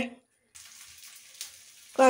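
Curry simmering in a clay pot on the stove: a faint steady hiss and sizzle, starting after a moment of silence, with one soft tap about halfway through.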